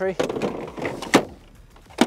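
Battery compartment of a Kress 60V cordless lawnmower during a battery swap: a plastic rustle and scrape, then one sharp latching click about a second in.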